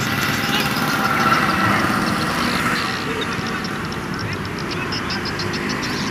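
Open-air ambience of an amateur football match: a steady background noise with faint distant voices, and from about halfway through a fast, even high chirping.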